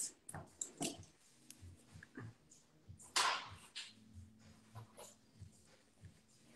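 Faint clicks and taps of small gel pots and tools being handled on a desk, with one short breathy hiss about three seconds in.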